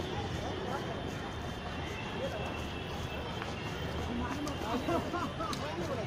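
Faint voices of several people talking at a distance, over a steady background noise, with the voices growing more frequent in the last couple of seconds.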